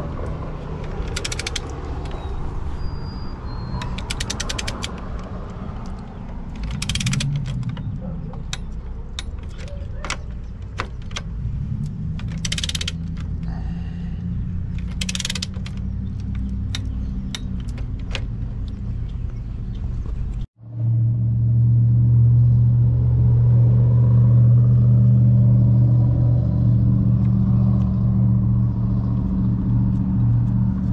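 Harbor Freight torque wrench ratcheting on main breaker lugs, with a quick run of ratchet clicks and several single sharp clicks as it reaches its set torque, over a low rumble. After a sudden cut about two-thirds of the way in, a loud steady low engine hum takes over.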